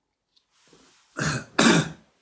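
A man coughs twice in quick succession, clearing his throat, a cough he puts down to eating sunflower seeds the evening before.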